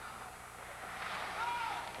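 Arena crowd noise from a packed hockey crowd, low at first and swelling about a second in, with one voice calling out briefly.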